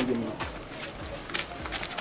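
Faint background ambience with birds calling, with a few light clicks.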